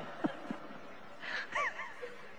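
Faint, brief laughter from a lecture audience: a couple of short, high-pitched chuckles a little past the middle, with soft breathy sounds before them.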